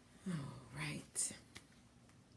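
A woman's voice: a short, quiet utterance lasting about a second, with a hissing 's'-like sound at its end, then a faint click.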